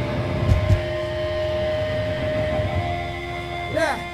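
Electric guitar amp feedback and hum ringing on in steady tones between songs, fading after about three seconds, with a couple of low thumps about half a second in.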